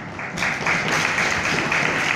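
Audience applause: many hands clapping together, breaking out about half a second in and holding steady.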